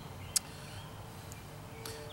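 Quiet outdoor ambience with faint repeated chirps, and one sharp click about a third of a second in.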